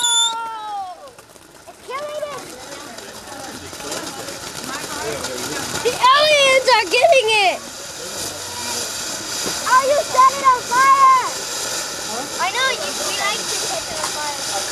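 Firework fountain spraying sparks with a steady hiss that builds from about five seconds in, after a falling firework whistle dies out just after the start. Voices shout and call out several times over it.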